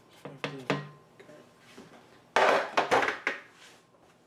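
A metal baking sheet knocked several times against the rim of a glass mixing bowl to shake toasted flour off it, each knock ringing briefly. A louder rattling clatter of the sheet comes about two and a half seconds in.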